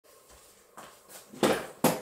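A person sitting down in an office chair: a few short shuffling and rustling noises, the loudest about halfway through.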